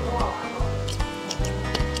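Background music with a steady beat and a bass line under held notes.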